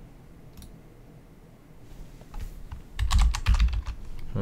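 Typing on a computer keyboard: a couple of faint key clicks around the middle, then a quick run of loud keystrokes in the last second.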